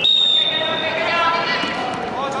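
A referee's whistle blown in one short, steady, high-pitched blast of about half a second, signalling the wrestlers to restart the bout, followed by voices calling out in a large hall.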